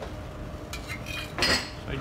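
Metal spoon clinking as sauce is spooned from a small stainless steel saucepan onto a plate. There are a few light clicks, then one louder ringing clink about one and a half seconds in.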